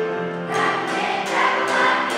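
Elementary school children's choir singing held notes together, with a new phrase beginning about half a second in.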